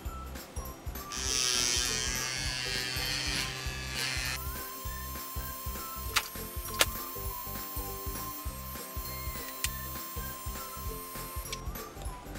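Small battery-powered suction pump of a Juvalips lip-plumping device running as it draws suction on the lips, loudest from about one to four seconds in. Background music with a steady beat plays throughout.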